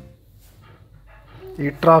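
Background music cuts off at the start, leaving a faint low rumble of a vehicle cabin idling in stopped traffic; a man's voice starts near the end.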